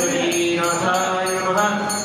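Priests chanting Sanskrit mantras in long, held, gently gliding tones, with a fast, even beat of about five strokes a second behind them.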